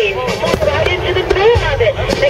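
Aerial fireworks shells bursting, the heaviest thud about one and a half seconds in, under a voice played over loudspeakers.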